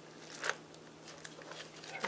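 Cellophane gift wrapping crinkling faintly as it is handled, with one sharper crackle about half a second in.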